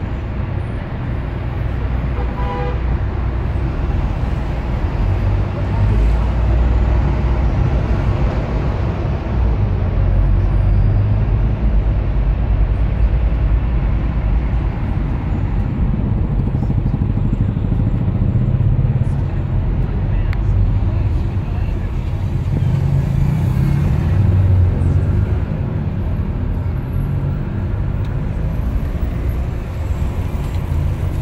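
Tour bus engine and road noise heard from inside the bus: a steady low rumble that swells and eases as the bus moves through traffic, with a brief tone about two and a half seconds in.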